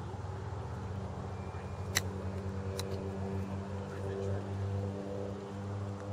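Steady low droning hum made of several held tones, with two sharp clicks about two and three seconds in.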